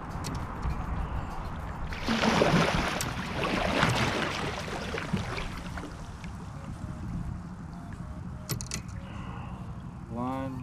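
Water splashing and sloshing beside a kayak, loudest for about three seconds starting two seconds in, over a low steady rumble.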